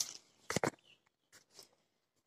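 Small twigs being snapped off a potted tree by hand: a quick cluster of sharp snaps about half a second in, then a couple of faint ticks.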